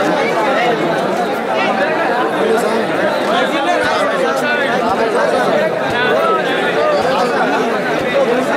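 A large crowd talking at once: a dense, steady babble of many overlapping voices.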